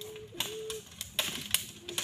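Sharp, irregular cracks and clicks of dry wood: long poles knocking against branches and dry sticks snapping, about four in two seconds, the loudest a little past halfway.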